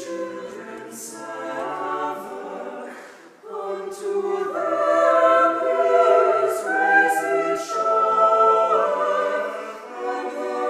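A small mixed chamber choir singing a cappella in sustained chords. The sound thins and nearly stops about three seconds in, then the choir comes back in louder and fuller.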